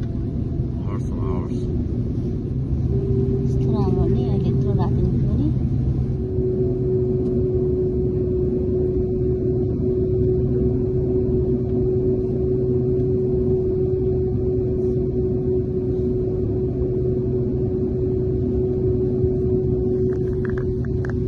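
Airliner cabin noise as the plane taxis: a steady low rumble of engines and air systems with one constant tone held over it. A few brief voices are heard in the first few seconds.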